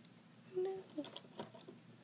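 Rubber loom bands being stretched and snapped onto the pegs of a plastic Rainbow Loom: a short pitched sound just after half a second in, then a quick run of small clicks about a second in.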